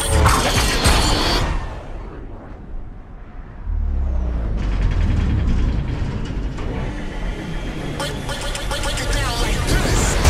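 Action-film trailer mix of sound effects and music. A loud crash and debris noise fades over the first second and a half. After a brief lull, a deep bass boom about three and a half seconds in leads into dramatic music with rising tones, with car noise underneath.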